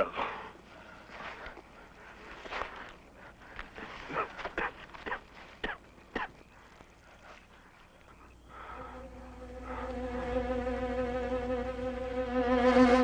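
A scattering of short, irregular sounds, then orchestral underscore fades in about eight seconds in: bowed strings holding long chords and swelling louder toward the end.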